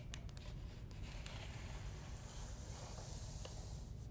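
Chart paper sliding into the paper holder of a resistance microdrill: faint rustling and rubbing of paper, with a few small clicks near the start.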